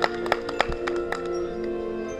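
High school marching band playing: held chords with a quick run of sharp percussion strikes in the first second or so, then the chords hold on alone.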